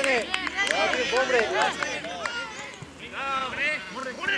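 Several voices shouting at once, overlapping calls and yells from players and coaches on a football pitch, easing off briefly about three seconds in.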